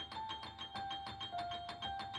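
Electronic keyboard played in a quick, even run of high notes, about seven a second, circling among a few pitches.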